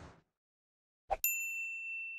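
A single bright ding from a logo-reveal sound effect: a short click about a second in, then one high chime that rings on and slowly fades.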